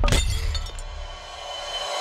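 Glass in a picture frame shattering as it hits the floor: one sharp crash just after the start, then tinkling that fades away over about a second.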